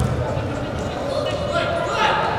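Live sound of an indoor football match in a large echoing hall: players calling out over a steady din, with a sharp ball kick about one and a half seconds in.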